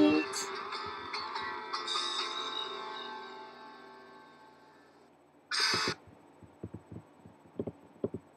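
The last chord of an acoustic song rings out and fades away over about four seconds, just after the final sung note ends. About five and a half seconds in comes a half-second burst of hiss, then faint scattered thumps of a handheld microphone being handled.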